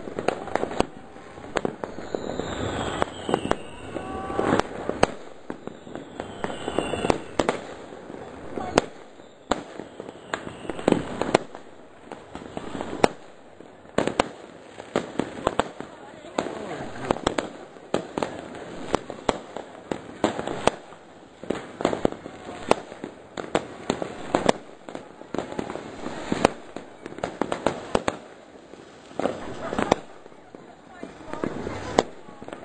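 Fireworks and firecrackers going off all around in a continuous, irregular stream of sharp bangs and crackles. A couple of whistling rockets glide in pitch during the first several seconds.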